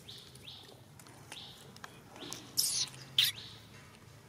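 High-pitched animal calls: a few short rising chirps, with two louder shrill calls about two and a half and three seconds in.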